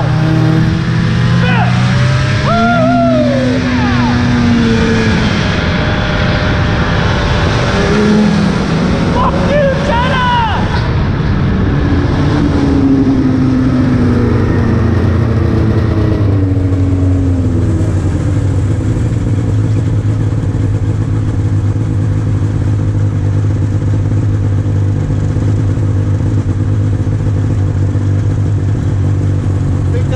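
Old two-stroke snowmobile engines running on a snow-packed trail, the pitch rising and falling with the throttle. About halfway through, the rushing hiss of the ride drops away and the engine settles to a steady idle.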